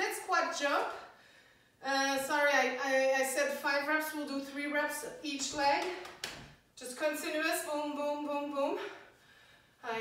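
A woman speaking in a small room, in three stretches with short pauses between them.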